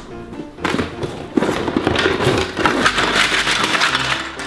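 A toy playset's cardboard box and plastic packaging being opened, rustling and crackling busily from about half a second in.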